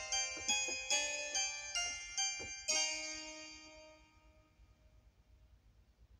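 Electronic keyboard played with a harpsichord sound: a run of quick separate notes and chords, then a last chord about three seconds in that is left to fade away, followed by faint room sound.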